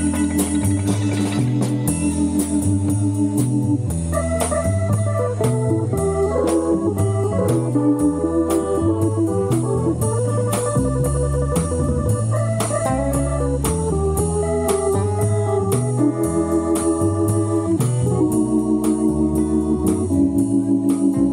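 Live blues band playing an instrumental stretch: an electronic keyboard carries an organ-toned part over a bass line and a steady drum beat. Held chords for the first few seconds, then a busier run of notes.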